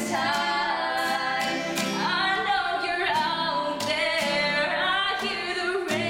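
Girls' choir singing with acoustic guitar accompaniment, one lead voice carrying a gliding melody over steady held lower notes.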